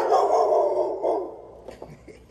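An excited dog jumping up on a person gives a throaty, rough vocal sound that lasts about a second and fades out.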